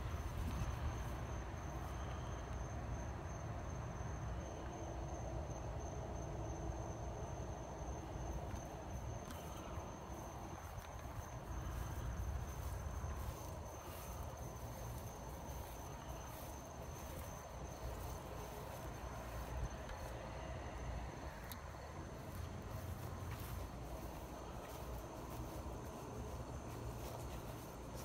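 Steady high-pitched cricket trill that fades out about halfway through, over a low rumble on the microphone.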